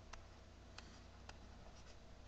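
Near silence with a few faint taps and scratches of a stylus on a drawing tablet during handwriting, over a low steady hum of room tone.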